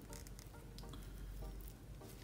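Faint crinkling and crackling of cigarette paper being peeled open by hand over the dry tobacco filling, in scattered small clicks.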